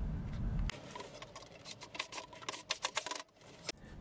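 A brief low rumble, then scattered light clicks and taps from handling a wooden drawer.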